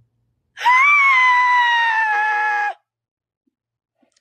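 A young woman's loud, high-pitched scream, held for about two seconds. It starts about half a second in, rises briefly, then slides slowly down in pitch before cutting off.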